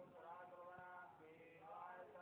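A man's voice faintly chanting a mantra in the puja.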